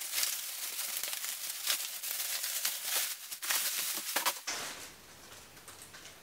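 Plastic packaging wrap crinkling and tearing as it is pulled off a new bicycle frame, a rapid run of small crackles that dies away about four and a half seconds in.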